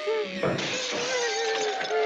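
A long hissing noise with a thin wavering tone running through it, starting about half a second in.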